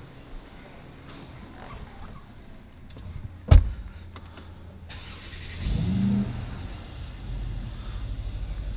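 A loud thump about three and a half seconds in. Then the 2013 Mercedes-Benz CL500's 4.7-litre turbocharged V8 starts: it catches about six seconds in with a brief rise in revs, then settles into an even idle.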